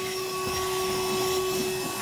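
VacLife VL106 cordless handheld vacuum cleaner running steadily, its motor humming at a constant pitch.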